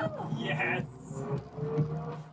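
A news report's background music with faint voices underneath, coming through the call's shared screen audio between lines of narration.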